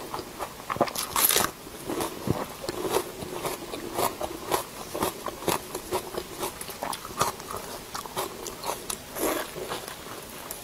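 Close-miked eating: crunchy bites and chewing of a raw green onion stalk, a steady run of irregular crackles. Wet, sticky sounds of a sauce-coated braised piece of food being pulled apart by gloved hands, with a bite into it near the end.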